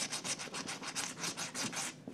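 Scratch-off lottery ticket being scratched with a small metal edge: rapid back-and-forth scraping strokes, several a second, removing the coating over the winning numbers, stopping just before the end.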